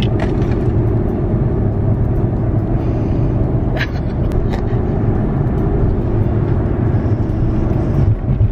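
Steady low rumble of a moving car heard from inside its cabin: road and engine noise with no break.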